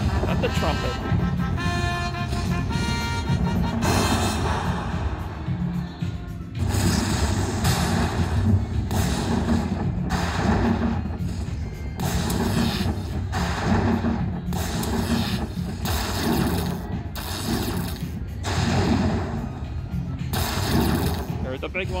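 Slot machine bonus audio: a chiming electronic jingle for the first few seconds, then a run of booming crash effects, about one a second, over a low rumble while the win meter counts up the collected credit prizes.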